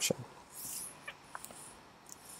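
The tail of a spoken word, then a pause with a faint soft hiss about half a second in and a few small, sharp clicks near the middle.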